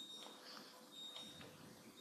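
Near silence: faint room tone with a faint, high, steady tone that comes and goes.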